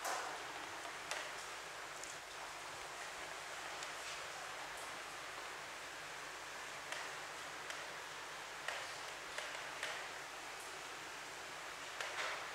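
Whiteboard eraser wiping marker writing off the board in short strokes: faint, scattered rustling swipes and light taps over a steady background hiss.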